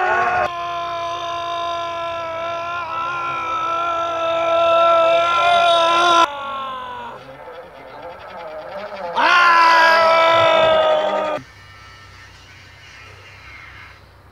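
A person's voice holding a long, steady yell at one pitch for about six seconds, starting loud and then easing off, before trailing down. A second loud held yell follows a few seconds later and lasts about two seconds.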